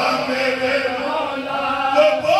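Several men's voices chanting a marsia, the Urdu mourning elegy, together in a sustained melodic recitation.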